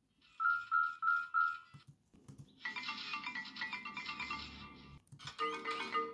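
R2-D2 droid beeps and whistles: four short, evenly spaced electronic beeps, then a long run of rapid warbling tones, then a shorter burst near the end. These are the droid's reply that is taken as an idea.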